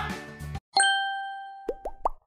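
A short music jingle cuts off about half a second in. A bright chime then dings once and rings out over about a second, followed near the end by three quick rising plop-like sound effects.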